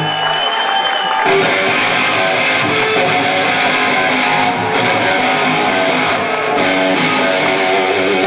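Amplified electric guitar played loud through a stage rig. It opens on a held note, then about a second in breaks into dense, full chord riffing.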